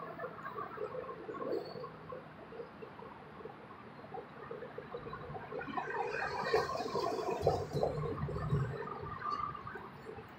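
Faint traffic noise as a Chevrolet Tahoe patrol SUV drives past close by, its engine and tyre noise swelling from about five seconds in and fading near the end.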